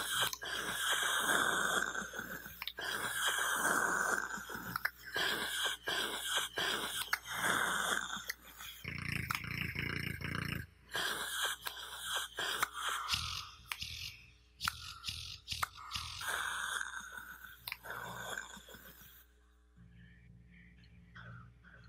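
A man's mouth and breath sounds in a recorded sound poem: the tongue clicking and smacking against the roof of the mouth among hissing, rasping breaths, with a low throaty rumble about halfway through. It stops suddenly shortly before the end.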